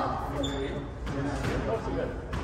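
Squash rally: the ball struck by rackets and hitting the court walls in sharp knocks, with a short high squeak about half a second in. People talk nearby.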